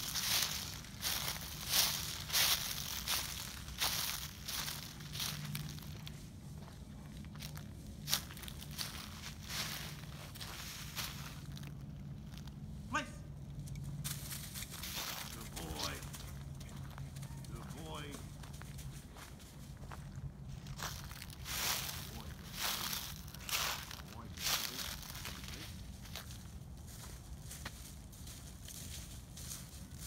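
Footsteps crunching through a thick layer of dry fallen leaves, in bursts near the start and again a little after the twenty-second mark.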